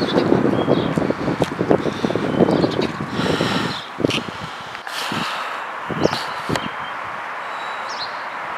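Wind gusting on the microphone with uneven rustling and knocks, and a few short bird chirps now and then.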